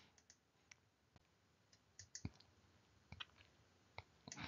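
Near silence: room tone with a few faint, short clicks, the clearest about two seconds in and two more a second later.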